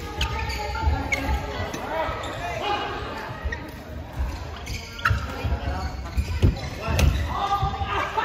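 Voices talking in a large, echoing badminton hall, with a few sharp smacks: two close together about a second in and a loud one near the end.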